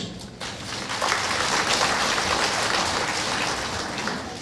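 Audience applauding. The clapping builds about half a second in, holds steady, and thins near the end.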